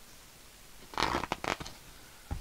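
Paper rustling as a picture-book page is turned: a short cluster of crisp rustles about a second in.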